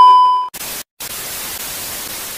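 TV test-pattern sound effect: a loud, steady single-pitch test-tone beep that cuts off about half a second in, then television static hiss, broken by a short gap just before a second in.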